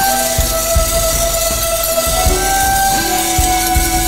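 Instrumental break of a Chinese-style pop song: held melody notes over a steady low drum beat, with no singing.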